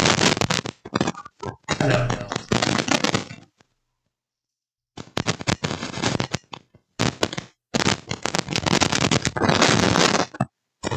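Loud, scratchy crackling from a cheap clip-on lapel microphone as clothing rubs against it, coming in dense bursts. The sound cuts out completely for about a second and a half a few seconds in.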